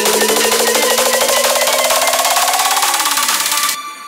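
Trance music build-up: a fast drum roll under a rising synth sweep, cutting off suddenly near the end into a quiet passage of held tones.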